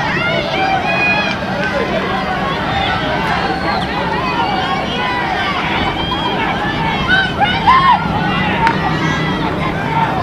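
Many voices shouting and cheering at once, spectators and teammates yelling encouragement to runners during a track race, with a few louder shouts about three-quarters of the way through.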